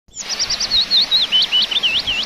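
A songbird singing a quick run of clear whistled notes, about six a second. The first notes fall in pitch and the later ones dip and rise again.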